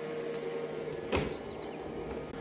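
Shark ION RV754 robot vacuum running steadily as it drives across a hardwood floor on its way back to its dock, a steady hum with a faint higher tone over it. A single short knock about a second in.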